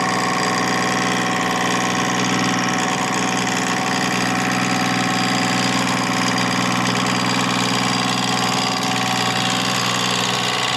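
Wood lathe running with a gouge cutting the spinning wood: a steady motor hum under a continuous hiss of the cut.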